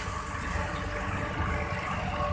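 Railway passenger coaches rolling slowly past as the train is backed into the platform: a steady low rumble of steel wheels on the rails.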